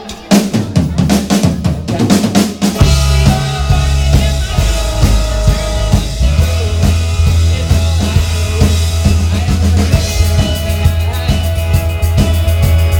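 Live band playing an instrumental passage: a drum kit beat opens it, then bass, guitars and a fiddle come in about three seconds in and carry on with a steady rock beat.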